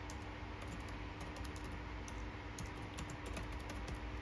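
Typing on a computer keyboard: quick, uneven runs of key clicks with short pauses between, over a steady low hum.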